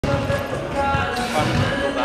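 Basketballs bouncing on a hardwood court during warm-up, a few separate bounces, over background music.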